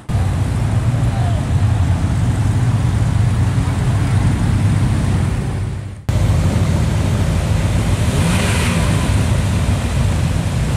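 Slow-moving cars' engines running as they roll past in parade traffic, a steady low hum with road noise. For the first six seconds it comes from a white Amphicar driving by; after an abrupt cut it comes from a black Ferrari Testarossa creeping past.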